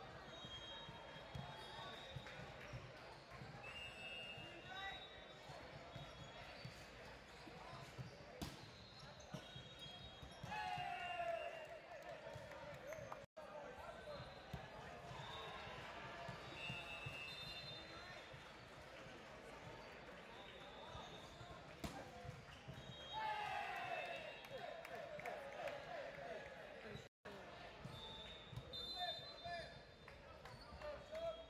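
Volleyball match in a large, echoing gym: a ball bouncing and being struck, sneakers squeaking on the hardwood court, and voices calling across the hall. The voices swell into shouts twice, about a third of the way in and again a little past three quarters.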